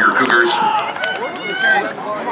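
Several voices of players and spectators shouting and talking over one another on a football sideline, with no clear words, and a few sharp clicks among them.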